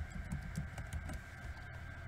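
Several light keystrokes on a computer keyboard in about the first second, typing out a line of code, over a steady low hum.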